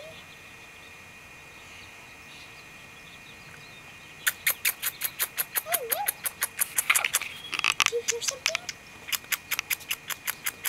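A rapid run of sharp clicks, about four or five a second, starting about four seconds in: a person clicking with the mouth to call a puppy. A few short, faint squeaks come in among them.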